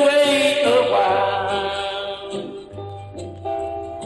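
Country record: a sung note wavering with vibrato over guitar and a bass line. The voice fades out about halfway through, leaving the instruments playing on.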